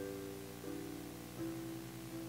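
Keyboard playing slow instrumental music in held chords, each changing to the next about every three-quarters of a second.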